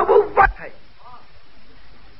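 A man's lecture voice finishing a word about half a second in, then a pause filled only by the faint hiss of an old tape recording, with one brief faint voice sound about a second in.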